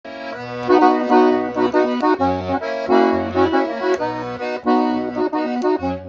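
Hohner piano accordion playing a melody over a bass-and-chord accompaniment, the low bass notes changing about once a second.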